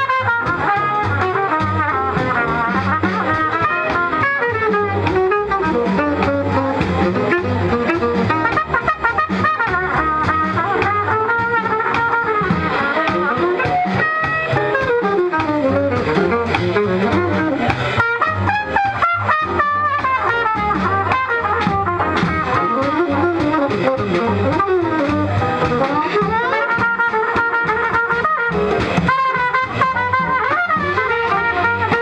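Live small-group jazz: trumpet and tenor saxophone playing melodic lines over a plucked double bass and drum kit keeping a steady swing pulse.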